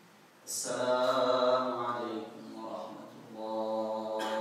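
A man chanting a prayer recitation aloud in long, melodic held phrases, the first beginning about half a second in and another starting just after three seconds in.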